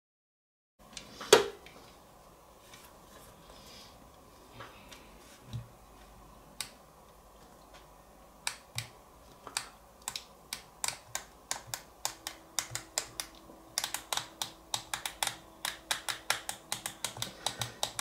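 Push buttons on a TOPROAD Bluetooth speaker's front panel clicking as they are pressed: one loud click at the start and a few scattered ones, then quicker and quicker presses, several a second near the end. The speaker does not respond to them because it has locked up.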